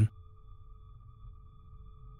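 Quiet background music: a steady held drone of a few pure tones with a low rumble beneath, left bare in a gap in the narration.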